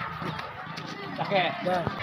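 Voices of people talking in the background, quieter than the main speech around it, with a couple of short clicks near the end.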